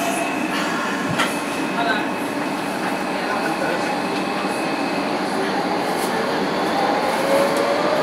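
A Docklands Light Railway B2007 Stock train running, heard from inside the carriage as a steady rumble of wheels and motors, with a sharp click about a second in. A whine rises in pitch through the last few seconds.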